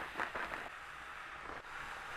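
Faint sizzling of frozen chopped collard greens in a pan of hot oil and onions, while a wooden spoon stirs them, with a few light scrapes against the pan.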